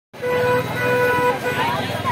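A vehicle horn honking, two steady toots followed by a brief third one, over busy street noise.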